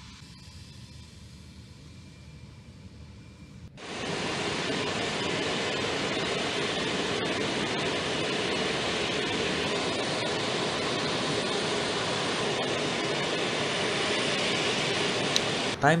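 Faint engine rumble of eight-wheeled armoured personnel carriers driving, then, about four seconds in, a sudden cut to a loud, steady jet-engine roar from Ilyushin Il-76 transport aircraft, holding even until near the end.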